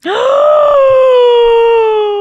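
A woman's long, loud cry of shock, held on one note: it jumps up at the start and then slowly sinks.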